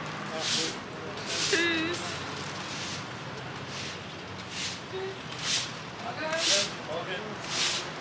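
Indistinct voices talking, with about seven short hissing bursts coming roughly once a second.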